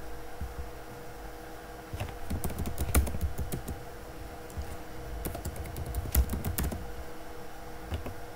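Computer keyboard typing in two short runs of keystrokes, one about two seconds in and another about five seconds in.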